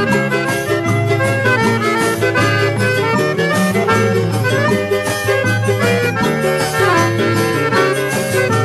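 Piano accordion playing a quick melody in an instrumental xote, over a steady bass line and a regular dance beat, from a 1972 studio recording.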